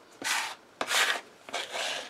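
A plastic scraper card rasping across a wooden cutting board three times, gathering up grated Parmesan.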